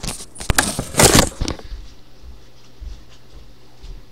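Rustling and knocking right against the microphone as the webcam is handled, with a sharp click about half a second in and a louder rustle around one second; after that only a faint low hum remains.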